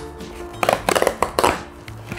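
Cardboard chocolate box being torn open by hand: a few short rips and snaps about half a second to a second and a half in, over background music.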